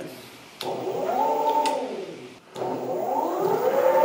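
Four brushless hub motors of an electric skateboard spinning the wheels freely off the ground under remote throttle, a whine that rises in pitch and falls back twice, each run lasting about two seconds.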